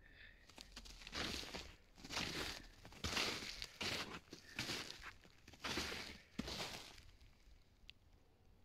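Footsteps crunching in snow, about seven steps at a slow walking pace.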